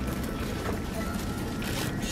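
Steady low background noise of a supermarket aisle, a faint even hum with no distinct sound event.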